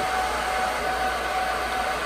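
Supermicro SYS-2029BT-HNR four-node 2U server's cooling fans running at full speed, a steady rushing of air with a faint steady whine. The fans are at their boot-time default full speed, before the management controller has sensed the room temperature and slowed them.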